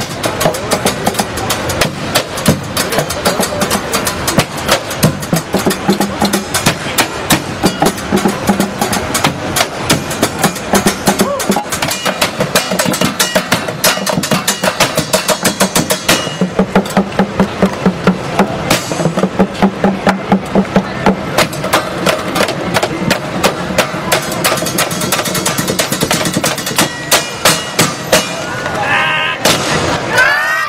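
Junk percussion ensemble playing a fast, driving rhythm with drumsticks on plastic trash bins and buckets, dense sharp strokes that run on without a break. A voice calls out near the end.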